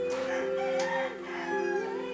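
A woman singing a long held note over a soft backing accompaniment. The note dips and wavers in pitch a little after the first second.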